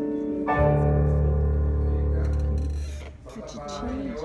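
Piano accompaniment for a ballet barre exercise: a low closing chord struck about half a second in and held, dying away around three seconds in. A voice begins near the end.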